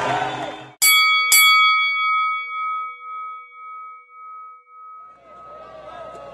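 Boxing ring bell struck twice, about half a second apart, about a second in, each stroke ringing on and dying away slowly: the bell opening round one. Crowd noise fades out just before it and comes back near the end.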